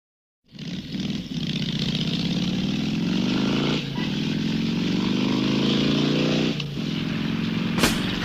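Motorcycle engine accelerating, its pitch climbing steadily, dropping back at a gear change a little before halfway and again near the end, then climbing again. Music starts just at the end.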